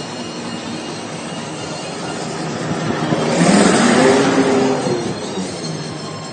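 Road traffic heard from a moving car, with a motor vehicle passing close by: its engine and tyre noise swell to a peak about four seconds in and then fade.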